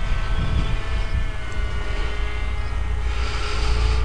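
Electric brushless outrunner motor and propeller of a small RC delta plane running at about a third throttle in flight, a steady whine with several tones that sinks slightly in pitch. A low rumble runs under it.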